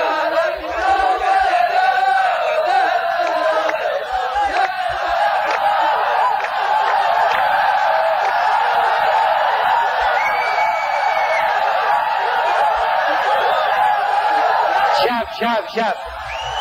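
Rows of men chanting a poet's verse together in a massed unison chant. The chant holds steady and breaks off about a second before the end.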